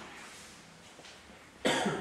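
A man coughs once, briefly, about one and a half seconds in, after a short quiet pause.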